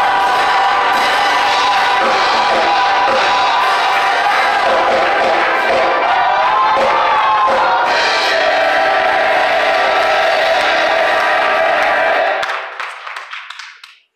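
Gospel choir singing with instrumental accompaniment. The sound fades out over the last two seconds.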